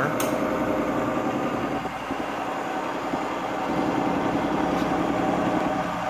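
Tree CNC knee mill running a CNC program: a steady mechanical hum with a whine at several pitches from the running spindle and axis drives.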